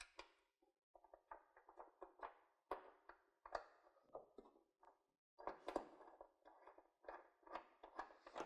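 Near silence with faint, irregular small clicks and rubs: a small steel nut being spun on by hand onto a hood-bracket stud.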